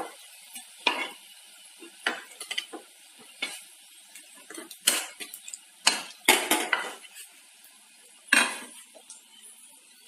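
A metal spatula clinking and scraping against an iron kadhai as fried pakoras are lifted out of the hot oil, in irregular knocks. The oil sizzles faintly between the knocks.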